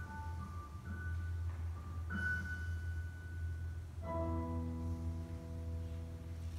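Slow solo instrumental music: sparse, held single high notes, then a fuller low chord about four seconds in that is held as the piece closes. A steady low hum lies underneath.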